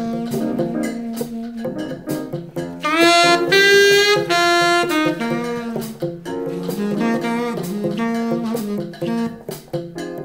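Jazz recording: a saxophone plays the melody over plucked bass and light percussion. About three seconds in it slides up into a loud held note lasting about two seconds, then returns to shorter phrases.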